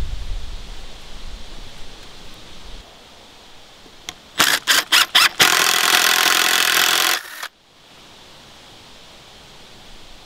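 Cordless drill driving into a wooden board: a few short pulses of the motor, then a steady run of nearly two seconds that stops suddenly. Earlier a low rumble, as of wind on the microphone.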